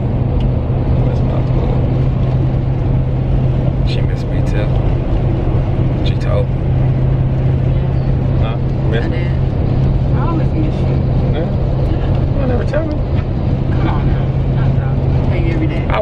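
Steady drone of road and engine noise inside a moving car's cabin, a constant low hum with faint, indistinct voices of passengers underneath.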